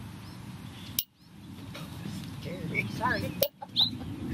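Outdoor ambience: a steady low rumble with small birds chirping. There are two sharp clicks, about a second in and shortly before the end, each followed by a brief drop-out of the sound.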